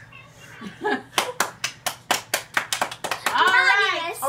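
Hand clapping: about a dozen quick, crisp claps over roughly two seconds, starting about a second in.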